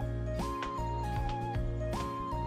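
Background music: a light melody that rises and then steps down in a short repeating phrase, over sustained bass notes and soft ticking percussion.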